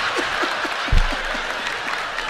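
Stand-up comedy audience applauding and laughing, with a man's short chuckles over it and a brief low thump about a second in.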